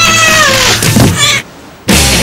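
A domestic cat meowing: one long meow that falls in pitch, followed about a second in by a shorter second sound.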